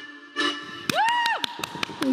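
Dance music stopping on a final hit about half a second in, then a high whooping cheer that rises, holds and falls, with scattered hand claps through the second half.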